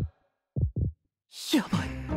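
Heartbeat sound effect: two short, low thumps in quick succession, a single lub-dub, marking nervous panic.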